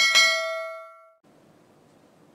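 Notification-bell 'ding' sound effect from a subscribe-button animation: a single bright chime that starts with a click and rings out with several overtones, fading away over about a second.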